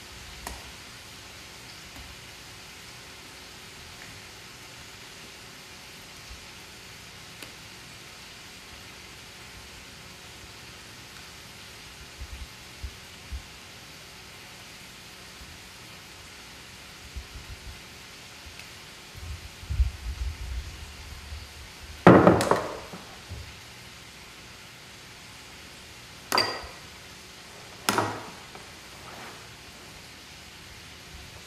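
Spatula scraping batter out of a glass mixing bowl into a metal baking pan: a long quiet stretch with soft knocks, then a loud knock about two-thirds in and two sharp glassy clinks near the end as the spatula taps the bowl.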